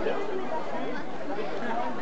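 Speech only: several people chatting, voices overlapping.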